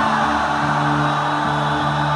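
Live rock band music playing held chords over a changing bass line, with no clear drum beat or vocal.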